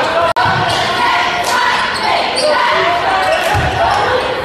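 Basketball game in a gym: many voices from the crowd and court echo in the large hall, with low thumps of the ball bouncing on the hardwood about half a second in and again near the end. The sound drops out for an instant near the start.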